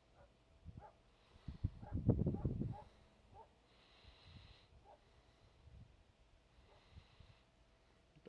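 A dog barking in a short run of rough barks about two seconds in, with a few fainter ones after; it doesn't sound very friendly.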